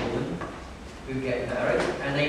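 A man's voice preaching through a microphone in a reverberant room, with a short pause about half a second in.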